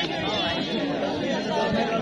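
Crowd of spectators chattering, many voices overlapping at once.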